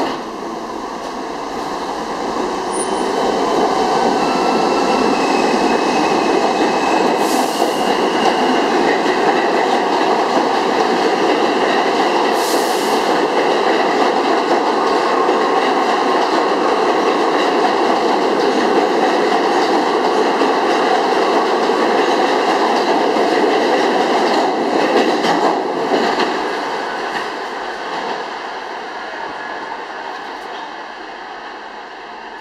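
Two New York City Subway trains, an R160 Q train and a B train, running through the station on the tracks either side of the platform, their wheels rumbling on the rails. The noise builds over the first few seconds, holds steady, and dies away over the last few seconds.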